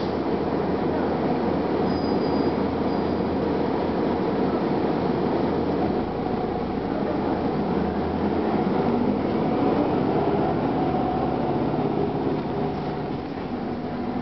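Cabin sound of a 1999 Gillig Phantom transit bus under way: its Detroit Diesel Series 50 engine and Allison B400R automatic transmission running, with a steady low rumble of road and body noise.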